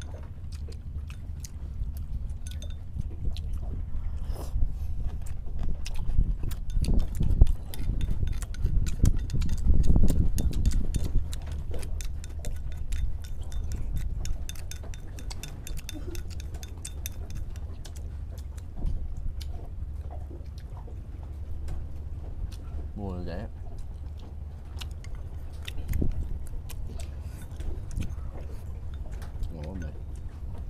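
Chopsticks clicking against porcelain rice bowls and chewing during a meal, over a low wind rumble on the microphone that swells about a third of the way in.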